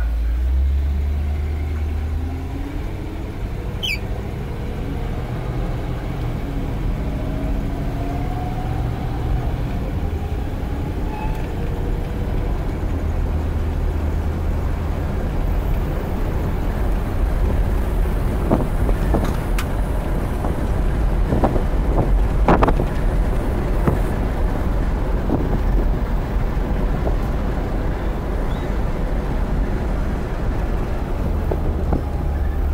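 1956 Cadillac's V8 engine and road noise heard from inside the cabin as the car is driven, the engine pitch rising as it picks up speed in the first ten seconds or so. It runs on its freshly rebuilt fuel pump. A few sharp knocks come in the second half.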